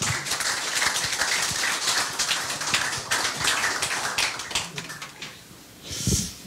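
Audience applauding: a dense patter of many hand claps that thins out and stops about five seconds in.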